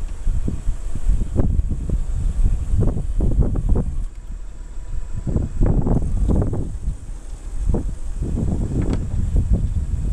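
The power rear tonneau lid of a Mitsubishi 3000GT Spyder's retractable hardtop being driven up and back down, with irregular mechanism noises that bunch up around the middle as the lid reaches full height. A steady low rumble runs underneath.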